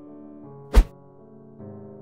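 Soft piano background music playing sustained chords, cut by a single loud, deep thud a little under a second in, a slideshow transition effect.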